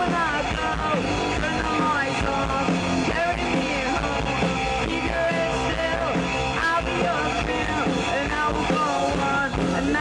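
A rock band playing live through a stage PA: electric guitar, bass guitar and drums in a steady pop-punk passage.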